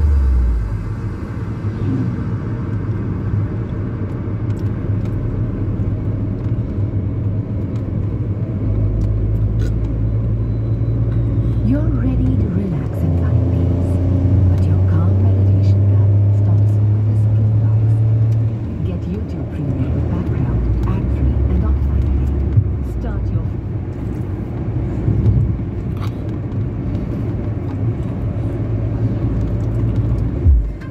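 Car interior while driving: the engine's low hum and road rumble, stepping to a new pitch several times as the car changes speed.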